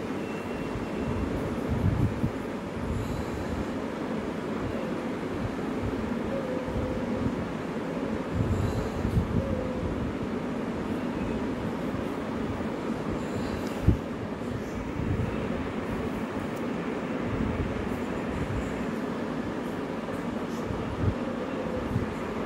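Steady rumbling background noise with low buffeting, and a single sharp click about fourteen seconds in.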